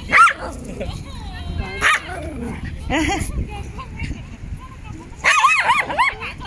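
Small dogs barking as they play: a few single sharp barks, then a quick run of barks near the end.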